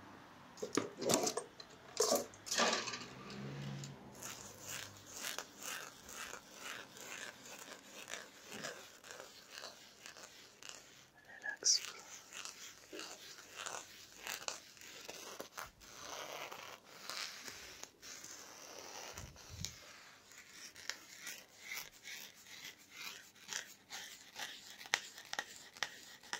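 A plastic massage tool scratching and tapping over a cotton T-shirt on a person's back, making a dense run of short, irregular scrapes and taps.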